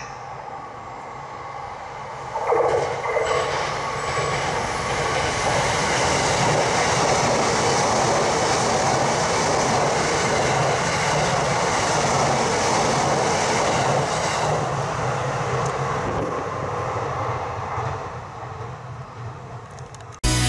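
JR East E233-7000 series electric commuter train running past: its noise jumps up about two seconds in, stays steady while the cars go by, then fades away near the end.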